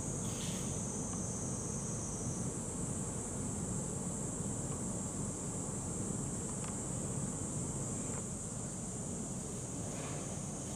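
Steady high-pitched insect drone over a low background rumble. A lower part of the drone drops out about two seconds in.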